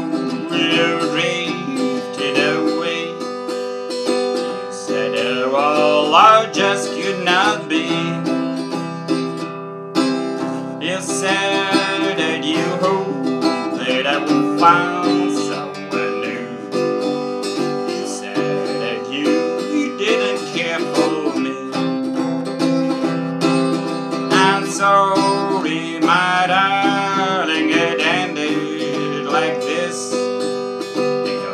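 Harley Benton travel acoustic guitar with 13-gauge steel strings, strummed and picked through a run of chords, with a man's voice singing along at times.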